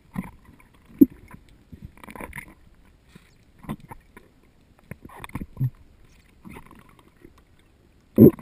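Muffled, irregular knocks and rubbing heard underwater through a camera housing as a freediver pulls hand over hand down a guide rope. The sharpest knock comes about a second in, with softer thumps every second or two after it.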